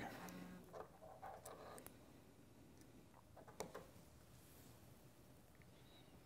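Near silence, with a few faint clicks of a test lead's alligator clip being handled and clipped onto a motor lead.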